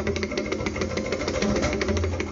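Pakhawaj, the barrel-shaped two-headed drum, played with a fast, dense stream of hand strokes: deep strokes on the bass head under ringing, pitched strokes on the treble head.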